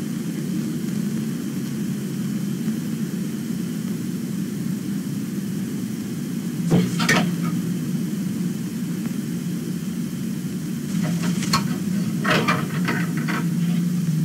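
Film soundtrack audio: a steady low hum with hiss. Brief knocks or rustles come about seven seconds in and a cluster near the end.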